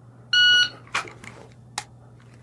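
Electronic shot timer giving a single start beep lasting under half a second. The pistol is then drawn, with a click about a second in and a sharp dry-fire trigger click near the end.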